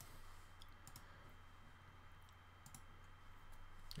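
Near silence: faint room tone with a few soft computer mouse clicks.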